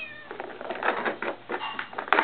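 A cat gives a short meow, then a ball clatters and rattles irregularly around the plastic track of a Star Chaser Turbo cat toy as it is batted along.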